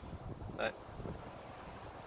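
Low wind rumble buffeting the phone's microphone, with one short spoken word a little over half a second in.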